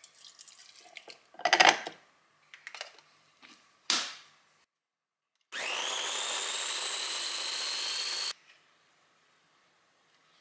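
Milk and chestnuts poured from a saucepan into a plastic chopper bowl, with a splash and a few knocks. Then a Ninja mini chopper's motor runs for about three seconds, its whine rising in pitch as it spins up, grinding the warmed chestnuts in milk, and stops suddenly.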